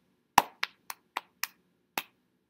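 Hand claps and body-percussion pats in a steady rhythm: six sharp strokes about four a second, the first loudest, with a longer gap before the last.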